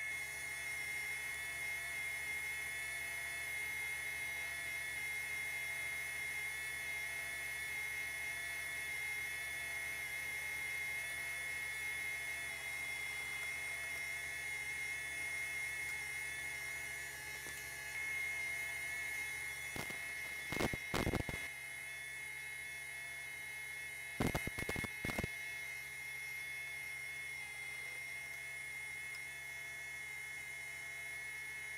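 Industrial sewing machine running: its motor hums steadily with a constant high whine, and about two-thirds of the way in the needle runs in two short bursts of rapid stitching a few seconds apart.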